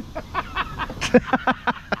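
A man laughing in quick, short breathy bursts, several a second, with one sharp louder burst about halfway.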